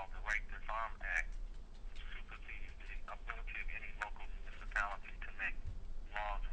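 A person talking, the voice thin with little bass, like speech heard over a telephone line.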